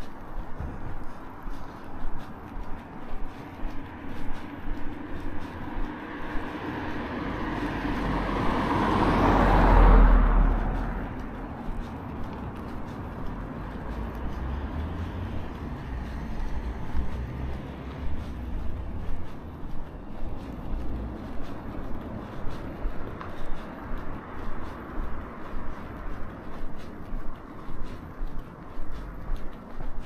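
A car approaches and passes close by on the road, its tyre and engine noise building to a peak about ten seconds in and then dying away. Regular footsteps on the pavement run underneath throughout.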